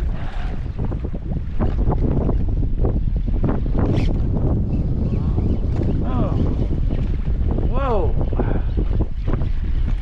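Strong wind buffeting the action camera's microphone as a steady rumble, with waves slapping against the plastic kayak hull in scattered short knocks.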